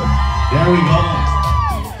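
Dance music with a steady bass beat, and a woman's high whoop held for well over a second on top of it, answering a call for the women to scream.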